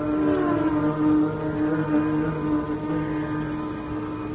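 Male Carnatic vocalist holding one long, steady note in raga Ahir Bhairav, slowly fading, with a softer lower tone sustained beneath it.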